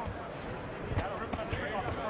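Boxing gloves landing on a body in a close-range exchange: a few dull thuds, with a sharp smack about a second in, over an ongoing voice.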